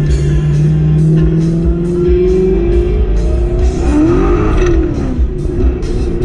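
Fox-body Mustang's engine accelerating, heard from inside the cabin: its note climbs over the first couple of seconds, then rises and falls again about four seconds in. Music plays loudly throughout.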